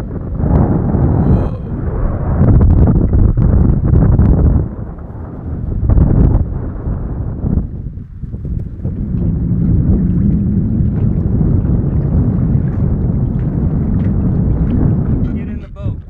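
Strong wind buffeting the microphone: a loud, gusty rumble that surges and eases, dipping briefly about four and a half and eight seconds in.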